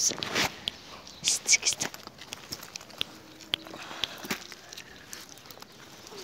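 A small dog nibbling and licking at a person's fingers: scattered soft clicks and smacks, with a few faint crunches of gravel underfoot.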